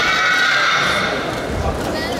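Overlapping voices of players and supporters calling out in a large hall, with drawn-out high shouts that slide slightly in pitch.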